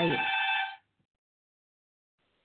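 A brief electronic ringing tone, a cluster of steady pitches lasting under a second, that cuts off suddenly.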